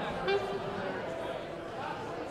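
Murmur of audience voices in a large hall between songs, with one short held tone about a third of a second in.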